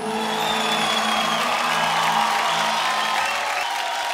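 Studio audience applauding and cheering, a dense steady clatter of many hands, as the held final note of the song's backing music fades out about three seconds in.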